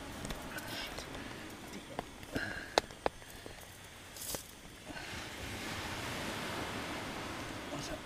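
Quiet shingle-beach ambience of wind and surf, with a few sharp clicks around three seconds in and a steadier rush of noise over the last few seconds.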